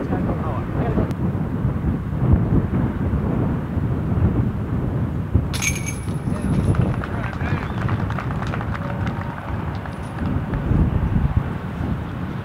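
Disc golf basket chains rattling as a putt hits them, a sudden bright metallic jingle about five and a half seconds in that fades over a second or so. Throughout there is a steady rumble of wind on the microphone and indistinct voices.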